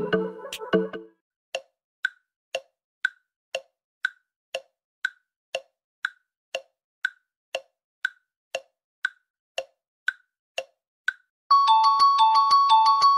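Countdown-timer sound effect: clock-like ticks about two a second, alternating a higher and a lower tick, running for about ten seconds after a snatch of pop music cuts off about a second in. Near the end a bright chiming jingle comes in.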